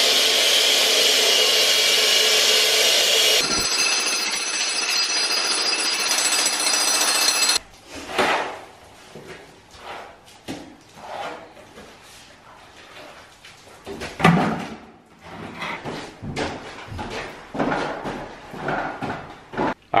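A power saw cutting through a concrete basement floor, a loud steady noise for about seven and a half seconds that stops abruptly. After it come irregular knocks and scrapes of hand tools breaking up and digging out concrete and soil in a trench.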